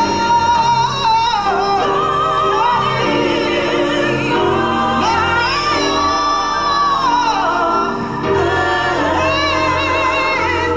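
A women's vocal ensemble singing together into microphones, a lead voice holding long notes with vibrato over sustained harmony.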